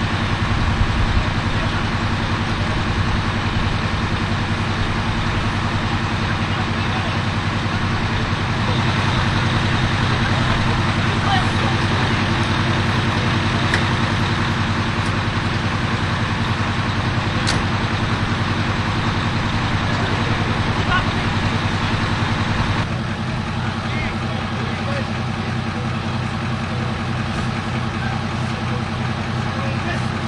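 Ambulance engine idling steadily, a continuous low hum, with voices in the background. It drops a little in level about three-quarters of the way through.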